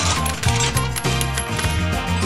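Upbeat intro jingle with a rapid run of clinking sound effects over it.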